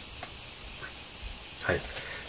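Steady, faint high-pitched hiss of room tone and recording noise, with a couple of faint small clicks; a short spoken "hai" near the end.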